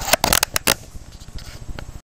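A few sharp clicks and rustles in the first second, then a lower, uneven rustling.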